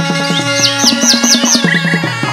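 Chầu văn ritual music from a live band, with a steady percussion beat under held instrumental notes. A bird's chirping sits over it: a quick run of about five high falling whistles starting about half a second in, then a few short pips near the end.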